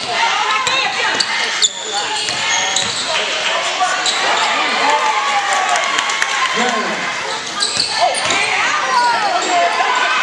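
Live basketball game sounds: the ball bouncing on a hardwood court and sneakers squeaking in short chirps, with players and spectators calling out.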